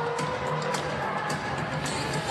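Music playing in a basketball arena over a steady murmur of crowd noise.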